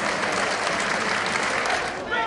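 Football stadium crowd cheering and applauding in a loud, continuous roar, reacting to a shot on goal.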